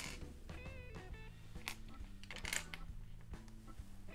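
Quiet background music with guitar. About halfway through, a couple of sharp clicks of plastic LEGO bricks being handled on the table.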